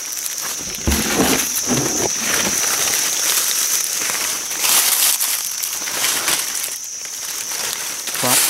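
Dry leaf litter rustling and crackling in irregular bursts as it is disturbed, loudest about a second in and again near five seconds. A steady, high-pitched insect drone runs underneath.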